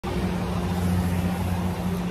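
A vehicle engine idling, a steady low hum with an even hiss behind it.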